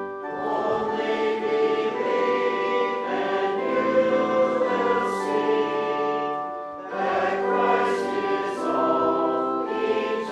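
Congregation singing a hymn in slow, held notes, with a short break between phrases a little after the middle.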